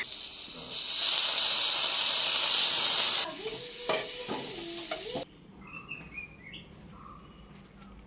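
Food sizzling in a hot pan, a loud steady hiss that drops in level about three seconds in and stops abruptly about five seconds in. Faint bird chirps follow.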